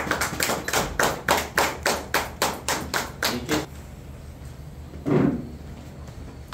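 A small group applauding with even hand claps, about four a second, that stop after nearly four seconds. A short, low sound follows about five seconds in.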